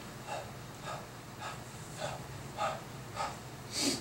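A man breathing in short, rhythmic breaths under exertion, about two a second, with a sharper hissing exhale near the end. A steady low hum runs underneath.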